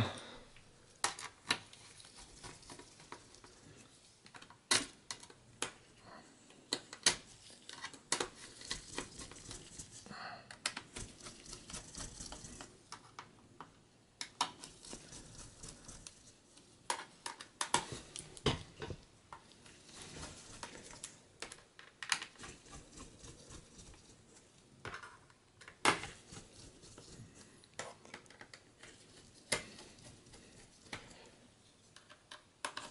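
Mini Phillips screwdriver driving the small screws of a laptop's bottom cover back in: faint, irregular clicks and ticks of the bit and screws, with a few short stretches of soft scraping and handling.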